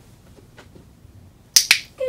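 A dog-training clicker pressed once near the end, giving a sharp two-part click-clack, marking the puppy for holding its down-stay before the reward.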